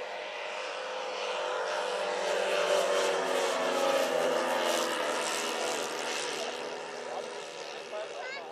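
The propellers of a large radio-controlled four-engine DC-6B scale model airliner flying past. A steady multi-tone drone swells to its loudest about three to four seconds in, then fades as the plane passes and climbs away, dropping slightly in pitch.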